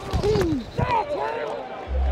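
Men's shouts and yells from football players, two raised-voice calls over a low rumble.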